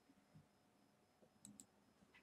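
Two faint computer mouse clicks in quick succession about one and a half seconds in, against near-silent room tone.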